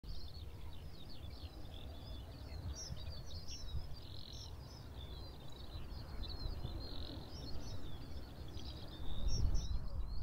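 Birds singing: many short, high chirps and trills from several birds, over a steady low rumble.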